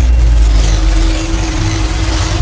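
Loud intro sound effect: a deep, steady rumble under a broad rushing noise, easing off slightly over the two seconds.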